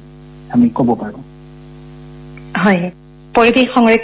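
Steady electrical hum with many evenly spaced overtones, heard in the pauses between short bits of speech.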